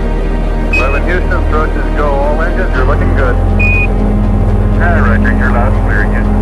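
A narrow, radio-like voice transmission, broken by two short high beeps (one about a second in, one a little past halfway), over a steady low drone of background music.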